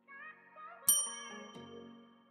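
A single bright bell ding about a second in, the loudest sound, ringing out and fading over soft intro music with a few short rising notes: a notification-bell sound effect.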